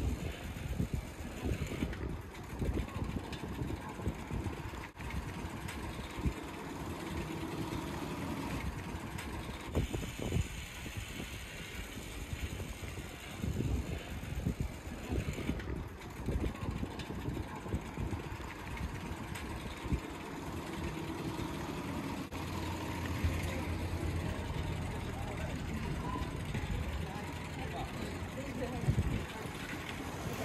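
Outdoor street ambience heard from a moving bicycle: people talking and a motor vehicle engine running, with a continuous low rumble that swells and fades.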